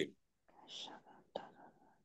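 A man whispering faintly in a pause between spoken prayer lines: two short breathy stretches, one about half a second in and one about a second and a half in.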